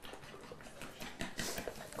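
A fork beating eggs in a well of flour: quick, light clicks and scrapes at about five a second.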